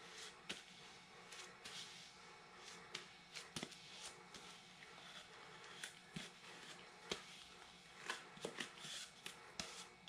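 Nitrile-gloved hands rubbing wet epoxy resin into a cardboard rocket body tube: faint scuffing and rustling with many small scattered clicks and taps as the hands slide and turn the tube.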